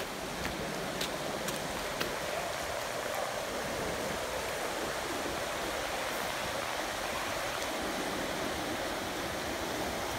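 Steady rush of river water running over rocky rapids, with a few faint clicks in the first couple of seconds.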